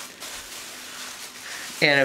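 Plastic grocery-bag strips rustling faintly as they are twisted and woven by hand; a voice starts near the end.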